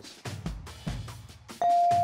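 A single steady electronic signal tone sounds about one and a half seconds in, held for just under a second, over quiet background music. It is a quiz-show game tone in the three-second answer period of a lightning round.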